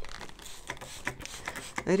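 A hand-held plastic trigger spray bottle being handled and pumped, giving a series of short, irregular clicks and spritzes mixed with plastic rustling.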